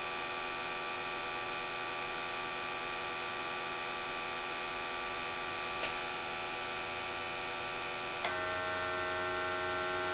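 Steady electrical hum from a Honeywell IQ Force docking station during its zero calibration. About eight seconds in, a click sounds and the hum changes tone as the dock switches over to applying gas for the bump test.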